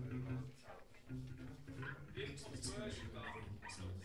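Indistinct voices talking and chattering in a small live-music venue between songs, with no music playing.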